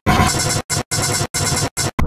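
Heavily distorted, harsh effects-processed audio, chopped into loud fragments by abrupt silent gaps several times over.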